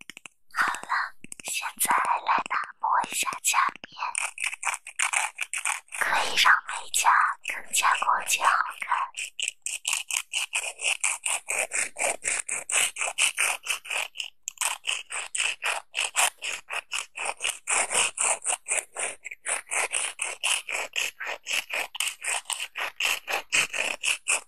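A nail file and then a foam buffer block rubbed in quick, close-up scraping strokes. The strokes are coarser and lower in the first part, then become a steady, sharper run of about three or four strokes a second.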